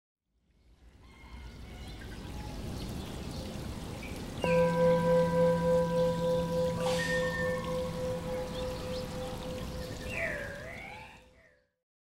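Water trickling ambience fading in, then a bell struck once about four and a half seconds in, ringing with a slow pulsing beat as it dies away. A short warbling whistle sounds near the end.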